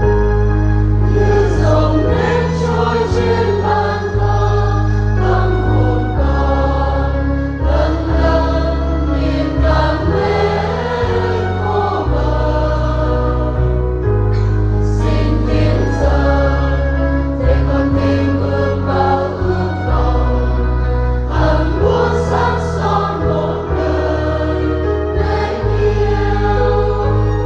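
Church choir singing a Vietnamese Catholic hymn with instrumental accompaniment, over sustained bass notes that change every second or two.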